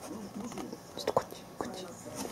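A person's soft, half-whispered voice in short phrases, with one sharp click just past the middle.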